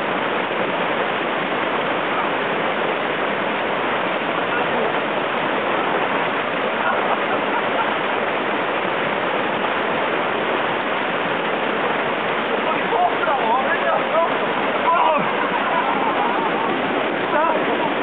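White water of a fast mountain stream rushing over rocks close to the microphone: a steady, loud, unbroken rush. Voices call out faintly over it in the last few seconds.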